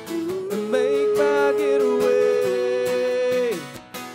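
Live country song: voices hold one long sung note in harmony over a strummed acoustic guitar, the note ending about three and a half seconds in.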